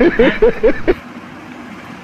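A person's voice for about the first second, then it stops and only a steady background hum remains.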